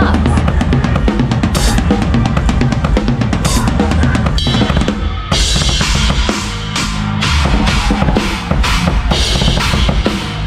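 Drum kit played fast, with rapid bass drum and snare strokes. From about five seconds in, crashing cymbals wash over the beat.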